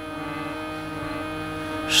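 A soft, steady musical drone: several tones held unchanged, as from a background instrument sustaining a chord.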